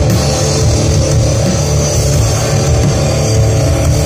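Live rock band playing loudly: electric guitars, bass and drums, with a heavy, boomy low end as heard from within the crowd.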